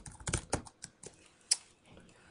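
Typing on a computer keyboard: a quick run of keystrokes, then a few spaced clicks, the last about a second and a half in.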